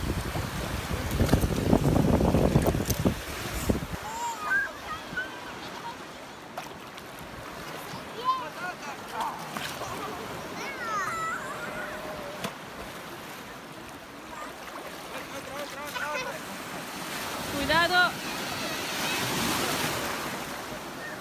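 Low sea waves washing and breaking in shallow surf, with wind buffeting the microphone for the first four seconds. Scattered voices of bathers carry over the water, one louder call near the end, and the wash swells up just before the end.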